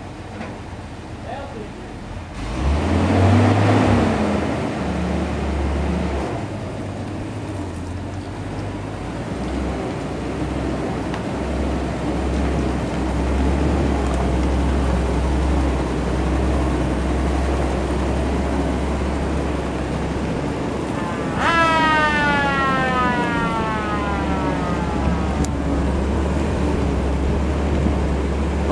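Six-cylinder engine of a 1943 Ford M8 Greyhound armoured car running as the vehicle moves off, with a brief rise in revs about two seconds in, then a steady low rumble. Near the end a high whine falls in pitch for about three seconds.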